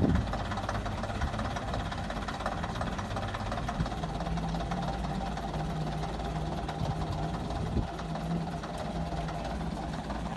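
London Transport RF-class AEC Regal IV single-decker's underfloor diesel engine running steadily at low revs.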